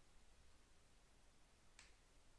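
Near silence: faint room tone, with one faint short click near the end.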